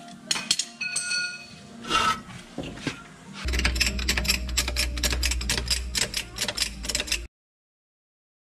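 Steel hand tools clinking and ringing against a bottle jack and trailer suspension hardware, then a fast run of clicks, about seven a second, over a low hum. The sound cuts off abruptly near the end.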